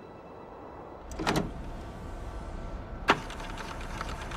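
A low steady rumble with a faint hum. It is broken by a short rushing burst about a second in and a sharp click just after three seconds.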